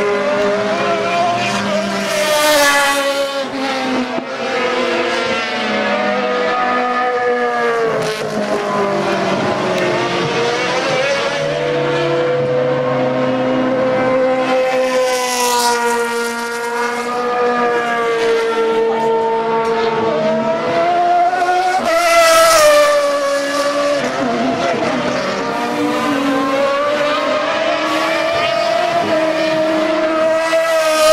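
Súper TC2000 touring cars passing one after another at racing speed, their engine notes rising and falling as they approach, change gear and go by. Several cars overlap at times, with the loudest passes about two seconds in, midway and about three-quarters through.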